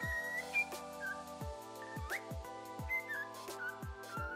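A cockatiel whistling short notes, with one quick upward glide about two seconds in, over music with steady sustained tones and deep bass hits.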